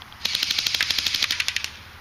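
Airsoft electric rifle (AEG) firing one full-auto burst of about a dozen shots a second, lasting about a second and a half.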